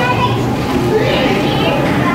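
Children's voices chattering and calling out over a steady low background rumble.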